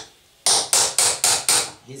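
Five quick hammer blows, about four a second, on a knife's celeron (phenolic laminate) handle scale resting on a small metal block, tapping it into fit on the tang. The celeron takes the blows without breaking.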